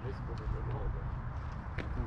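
Faint, distant voices over a steady low rumble, with a few light clicks.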